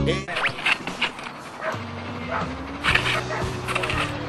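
A dog barking in short bursts, once about half a second in and again around three seconds in, over a low steady hum.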